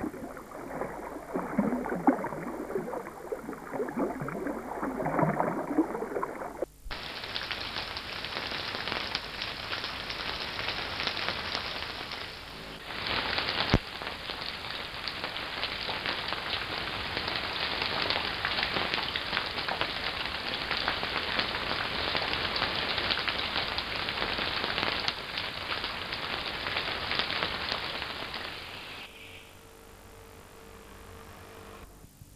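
Water sounds from a salmon river: water rippling and splashing around a swimming salmon, then, after an abrupt cut about seven seconds in, a steady, dense hiss of water, like rain or a shallow stream over stones. The hiss fades out just before the end.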